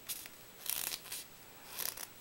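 Paper rustling and crinkling in several short bursts as a strip of paper is wrapped and pressed around a rolled-paper tube.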